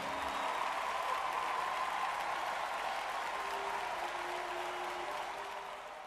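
Recorded crowd applause, a steady even clapping that fades away near the end.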